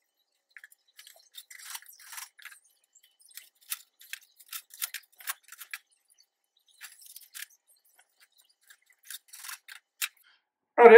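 Steel shelf uprights, pins and brackets being handled and fitted together: a quick run of light metallic clicks and scrapes, with brief pauses about three seconds and six seconds in.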